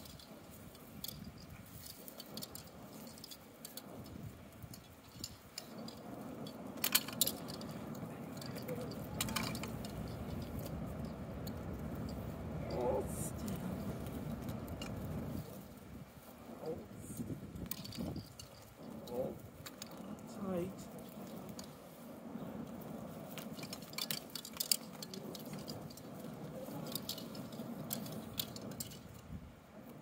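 Scattered clicks and rustles from balloons and their strings being handled, with faint voices in the background.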